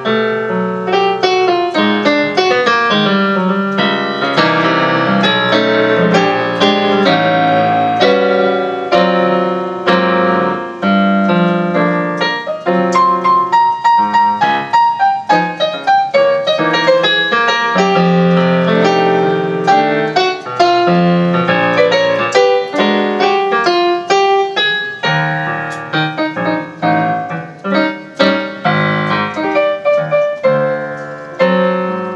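A grand piano plays a jazz ballad on its own, melody and chords together, with no singing. The notes are struck close together throughout.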